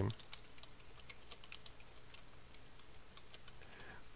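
Faint typing on a computer keyboard: a run of light, irregular keystrokes.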